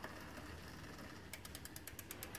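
Mountain bike's rear freehub ratcheting as the drivetrain turns, an even run of quick clicks, about eight a second, that starts a little past halfway through.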